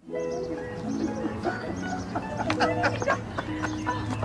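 Music with long held chords starts suddenly. From about a second and a half in, a crowd of people talk and call out over it in overlapping voices.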